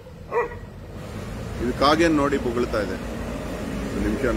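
A dog vocalizing briefly alongside a man's speech, over a low steady background hum.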